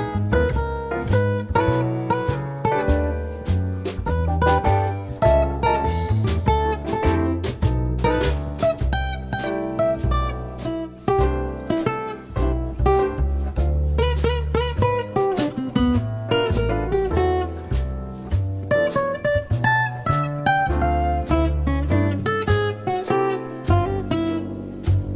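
Instrumental background music: a steady flow of quick, separate notes over a bass line.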